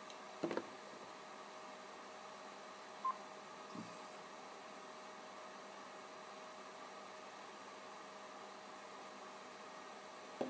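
Quiet room with a faint steady hum from an Icom ID-E880 D-Star mobile transceiver. A single click comes about half a second in, then a short high beep about three seconds in, as the radio waits after a call through the repeater.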